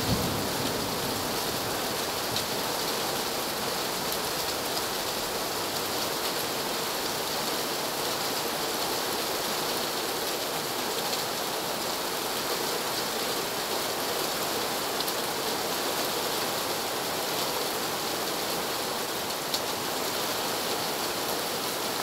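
Steady rain falling, an even, constant hiss with a few faint sharp drop ticks, and a brief low thump right at the start.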